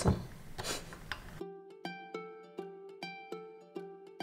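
Soft background music of plucked strings, a light melody of short notes about three a second, coming in about one and a half seconds in.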